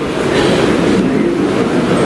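Audience applause: dense, steady clapping noise in a hall that briefly fills a break in a speech.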